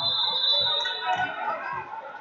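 Several voices of coaches and spectators shouting at once in a large hall during a wrestling bout, with a high steady tone held through the first half-second.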